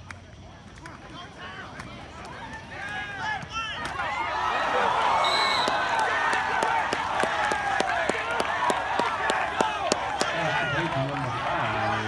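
Football crowd cheering and shouting during and after a play, many voices swelling about four seconds in, with clapping.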